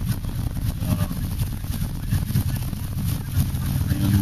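Steady low rumble of a car's engine and running noise heard from inside the cabin while it creeps along in stop-and-go traffic.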